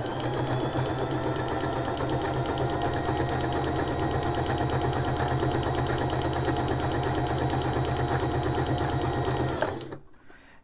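Sewing machine running at a steady speed, sewing a straight stitch along a folded fabric edge with a fast, even needle rhythm. It stops just before the end.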